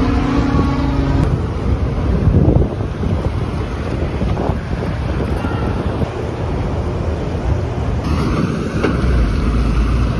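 Wind buffeting a handheld microphone over the rumble of street traffic. A steady hum is heard in the first second, and a vehicle rumbles past near the end.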